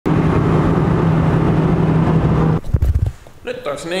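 Car engine droning steadily with road noise, heard from inside the cabin while driving; it cuts off abruptly about two and a half seconds in, followed by a couple of low thumps. A man starts speaking near the end.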